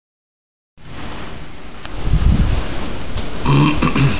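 Heavy rain and wind of a summer downpour, a steady hiss that starts a moment in, with a deep rumble swelling from about two seconds in. Near the end a short low grunt-like voice sound.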